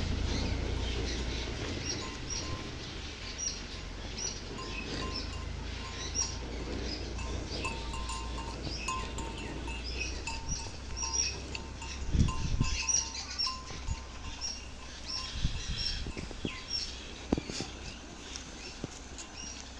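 Outdoor ambience of small birds chirping, short calls repeating on and off throughout, over a low rumble that fades away over the first few seconds. A few soft knocks come in the second half.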